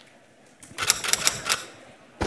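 A quick run of sharp clicks, about eight in a second, starting just over half a second in and stopping after about a second.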